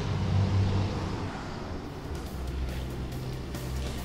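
Low, steady rumble of a nearby vehicle engine over outdoor street noise; the rumble drops in pitch about halfway through.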